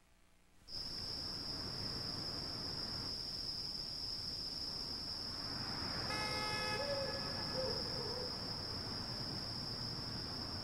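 Night-time parking-lot ambience after a brief silence: a steady high insect trill, like crickets, over a quiet background hush. About six seconds in, a car horn gives one short toot, followed by a faint wavering tone.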